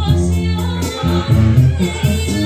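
A woman singing a slow Spanish-language ballad into a microphone over a karaoke backing track.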